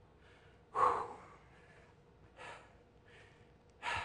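A man blows out one hard "whew" breath about a second in, then takes a couple of fainter breaths, straining through an isometric hold halfway up a band-assisted pull-up.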